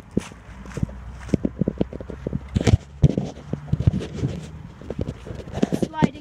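Footsteps and hand-held phone handling noise as someone walks around a car filming it: a string of irregular short knocks and scuffs, the loudest a little under halfway through.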